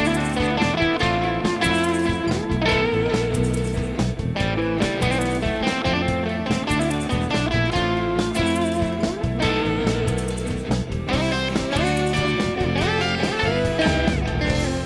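Funk-rock band playing an instrumental passage with no vocals, electric guitars to the fore over bass and drums.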